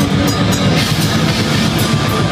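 Heavy metal band playing live: distorted electric guitars and a drum kit with cymbals in a loud, dense, unbroken wall of sound.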